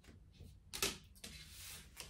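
Tarot cards being handled on a tabletop: a sharp tap a little under a second in, then a short soft sliding rustle as the deck is gathered up.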